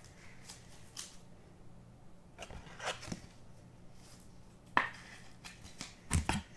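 Bowman Chrome baseball cards being flipped through by hand: a few soft slides and clicks of card stock, the sharpest about five seconds in, over a faint steady low hum.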